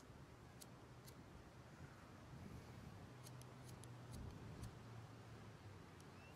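A cigarette lighter being struck again and again, faint sharp clicks: a few in the first second, then a quick run of strikes from about three to five seconds in.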